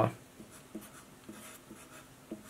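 Felt-tip marker writing letters on paper, a series of short, faint strokes.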